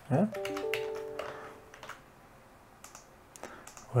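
A few computer keyboard keystrokes, with a short chord of steady tones lasting about a second and a half just after the start.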